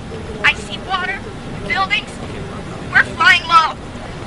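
A few short, high-pitched spoken phrases over a steady low rumble.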